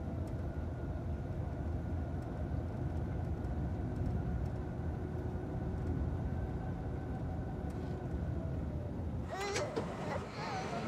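Steady car engine and road noise heard from inside the cabin of a moving car. Near the end a child's crying comes in.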